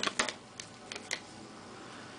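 Light handling noise: a few small clicks and taps as a 2.5-inch laptop hard drive and its pull tab are handled, with a cluster near the start and single clicks about half a second and a second in.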